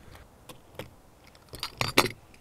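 Knife cutting into and prying at a plastic shotgun cartridge case: a few light clicks and scrapes, then a louder cluster of sharp clicks near the end.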